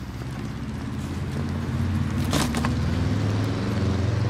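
A motor vehicle's engine running with a steady low hum that grows slightly louder over the first couple of seconds.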